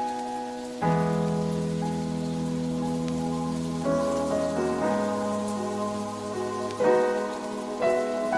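Background music: slow, sustained keyboard-like chords that change about every three seconds, over a steady soft hiss.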